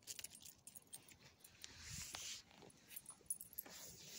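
Faint jingling and clicking of a small dog's metal collar tags as it gets up and moves on its leash, with some scuffing and rustling noise.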